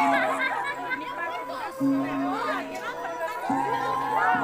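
A crowd of many voices talking and calling over one another, with music holding low steady notes underneath that break off and resume.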